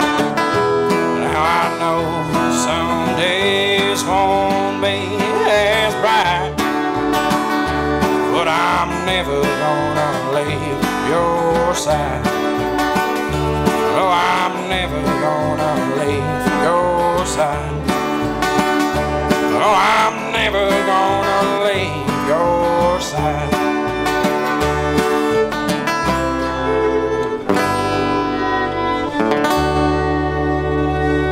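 Live bluegrass band playing without vocals: fiddle over strummed acoustic guitar and upright bass.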